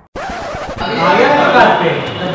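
A record-scratch sound effect starts suddenly just after the start, followed by music with a voice.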